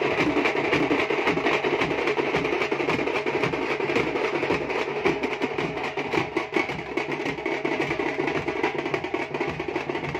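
Tamate drum troupe playing together: frame drums and large double-headed drums beaten with sticks in a fast, dense rhythm that runs on without a break.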